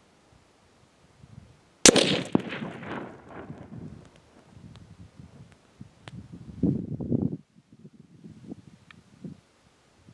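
A single .204 Ruger rifle shot about two seconds in, a sharp crack whose echo trails off over about two seconds. A shorter, duller noise follows at about seven seconds.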